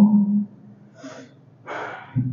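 A man's drawn-out syllable trails off, then a short, breathy intake of breath comes near the end, just before he speaks again.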